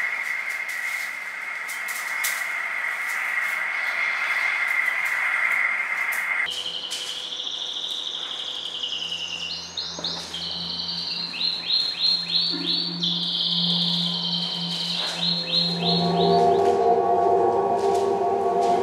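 Electronic soundtrack of sustained high synthesized tones. A steady tone cuts off about a third of the way in and is replaced by higher warbling tones over a low hum, broken by bursts of quick repeated chirping sweeps, with lower tones coming in near the end.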